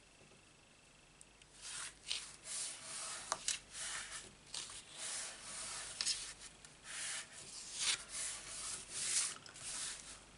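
Hands rubbing and pressing a card panel down onto its card base: a run of irregular dry swishes of skin and card on paper, starting about a second and a half in.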